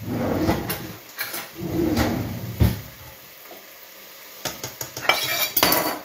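Cutlery and a plate clinking and clattering on a countertop: a run of knocks in the first couple of seconds, a quiet pause, then more clatter near the end.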